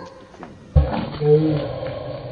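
Soundtrack of an old, low-fidelity TV comedy clip: a thump about three-quarters of a second in, then a short, low, voice-like sound.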